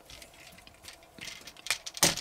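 Plastic parts of a Transformers action figure clicking and scraping faintly as hinged pieces are folded and tucked into place, with a sharper click near the end.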